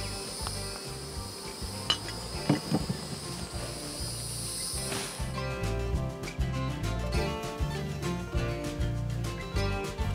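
Insects chirring steadily in a high, even drone, with a couple of faint clicks. About five seconds in, the drone cuts off and background music with a steady beat takes over.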